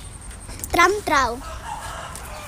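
A chicken calling twice in quick succession about a second in, the second call falling in pitch.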